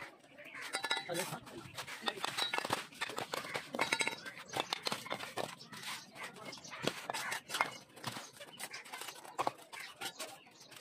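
Steel bricklaying trowels tapping and scraping on clay bricks and wet mortar as bricks are bedded and knocked level: a busy, uneven run of short clinks and knocks.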